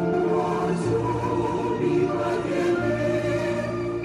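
Background music: a choir singing slow, sustained notes.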